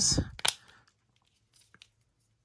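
Hard plastic toy pieces being handled: one sharp click about half a second in, then a couple of faint ticks near the end.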